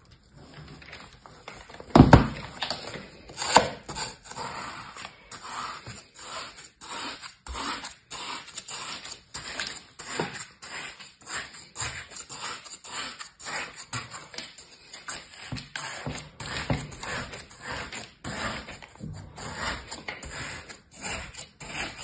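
Plastic toy shovel digging and cutting into kinetic sand in a plastic tray: a run of short scrapes, about two or three a second. Two louder thumps come near the start.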